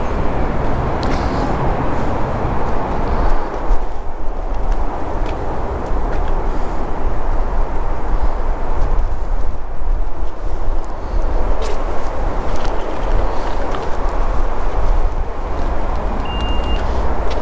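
Wind rumbling on the camera's microphone outdoors: a steady noisy rumble, heaviest in the low end, with a few faint clicks.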